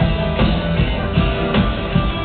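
Live rock band playing, with a steady drum beat of about two to three hits a second.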